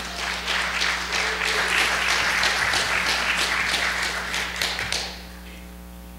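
Congregation applauding, dying away about five seconds in.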